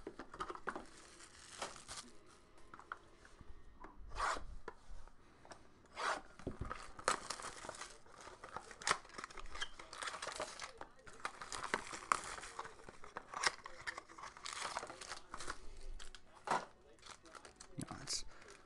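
Plastic shrink wrap and packaging on trading-card boxes being torn and crinkled by hand, an irregular run of crackles and rustles.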